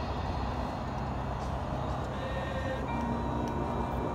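A lull in a marching band's performance: a low outdoor rumble, with soft held band notes at a few pitches coming in about halfway through.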